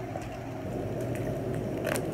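Soft crackle and handling noise of a plastic water bottle as a man drinks from it, growing slowly louder, with a short click near the end.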